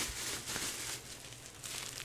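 Plastic bubble wrap crinkling irregularly as hands pull it apart and unwrap it.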